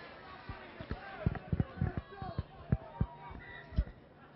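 Police helicopter overhead, heard as a series of low, irregular thumps from its rotor, with faint distant voices from the field.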